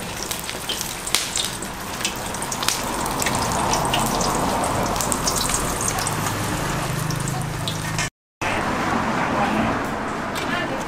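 A piece of fish deep-frying in a wok of hot oil: a steady sizzle full of small crackles and pops. The sound drops out for a moment about eight seconds in.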